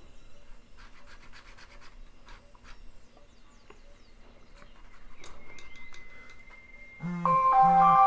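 Pen scratching on paper in short strokes as a drawing is shaded with cross-hatching. About seven seconds in, an alarm starts playing a loud tune of steady notes.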